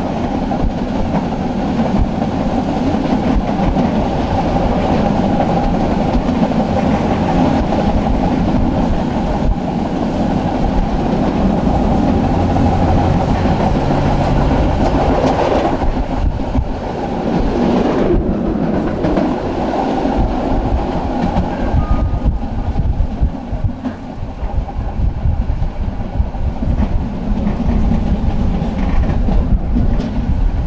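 Tram running along its track, heard from inside the car: a steady rumble of steel wheels on rail with clatter. It gets quieter and more uneven in the last several seconds.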